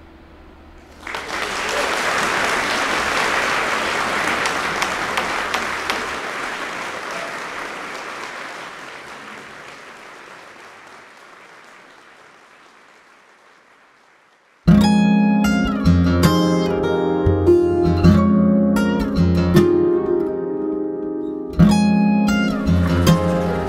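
Applause that swells in about a second in and slowly fades away, then solo acoustic guitar music starting abruptly about two-thirds of the way through, with sharp plucked notes.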